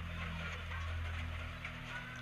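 Room tone in a pause between sentences: a steady low hum with faint, indistinct speech in the background.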